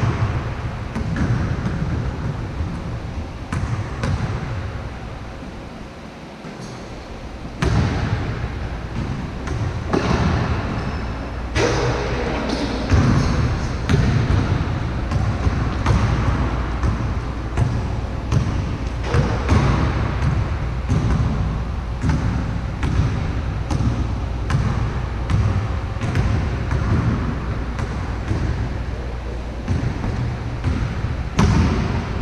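A basketball being dribbled and bouncing on the court during a one-on-one game, a run of repeated low thuds with now and then a louder impact.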